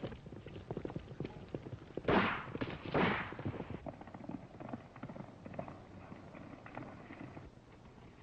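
Horses galloping, hoofbeats pattering quickly throughout, with two gunshots about a second apart around two and three seconds in.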